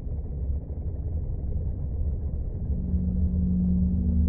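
Dark ambient soundtrack drone: a deep rumble that slowly swells, with a steady low note coming in near the end.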